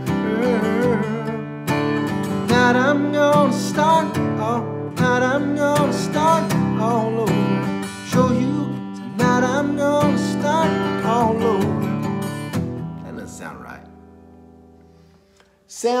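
Acoustic guitar strummed in a steady rhythm, with a man singing along over it. About twelve and a half seconds in the strumming stops and the last chord rings out and fades away, and a man's speaking voice comes in at the very end.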